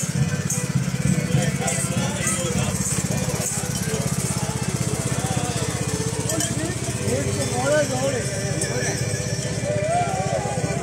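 Small single-cylinder-type engine of a riding lawn mower running steadily close by, with people's voices and laughter over it that grow stronger near the end.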